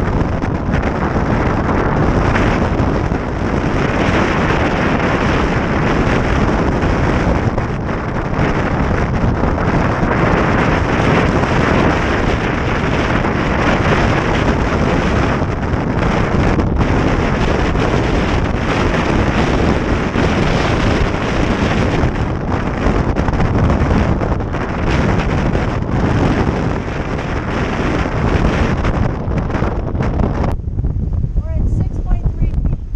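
Strong storm wind blowing hard across the microphone, loud and steady with swells of gusts, over the rush of waves breaking along a sailboat's hull.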